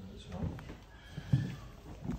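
Footsteps on a timber floor, a few knocking steps with one louder thump a little past halfway, under faint low talk.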